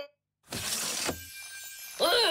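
A cartoon glass-crash sound effect: a sudden shattering crash about half a second in, which then dies away with a faint ringing.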